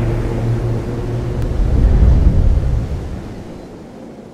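Cinematic intro sound effect: a deep rumbling drone with a few sustained low tones, swelling about two seconds in and then fading out near the end.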